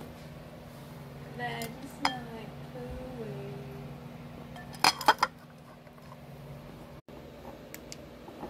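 Clinks and knocks of kitchen ware: a few light clicks, then a quick cluster of sharp clinks about five seconds in, the loudest sound. A low steady hum runs underneath and stops suddenly about seven seconds in.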